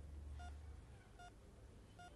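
Near silence: room tone with a faint low hum and two or three faint short electronic beeps.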